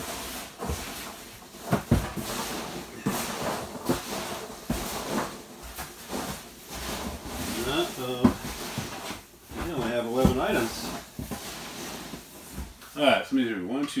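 Hands rummaging through a cardboard box of foam packing peanuts: continuous rustling with scattered knocks.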